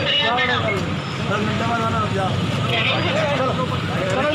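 People talking over a steady low hum of street traffic.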